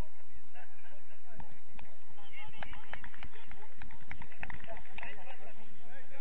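Players' distant shouts and calls during a small-sided football match on artificial turf, with a run of quick knocks from about two to five seconds in.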